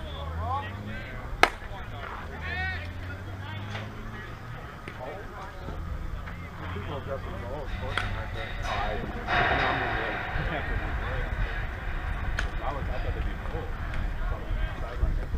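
A softball bat strikes the ball once about a second and a half in, a single sharp crack. Distant voices and shouts of players follow across the field.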